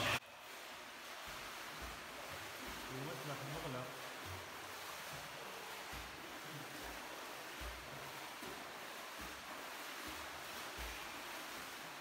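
Steady wash and splashing of pool water as swimmers move through an indoor swimming pool.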